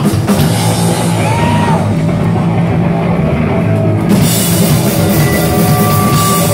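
Hardcore punk band playing live: distorted guitars, bass and a fast drum kit, loud and close through a cellphone microphone. The bright top end drops away for about two seconds in the middle, then comes back in.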